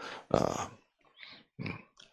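A man's short, gravelly hesitation sound "uh" into a handheld microphone, followed by a couple of fainter short breath or mouth sounds.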